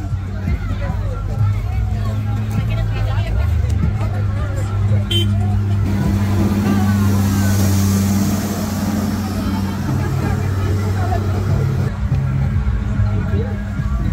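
Diesel engine of a Case 845B motor grader running close by, a steady low drone that swells to its loudest in the middle seconds and eases off after, over crowd chatter.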